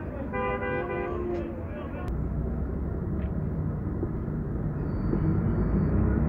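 A vehicle horn sounds once for about a second near the start, over the steady low rumble of a city bus engine idling. A thin high beep comes in near the end.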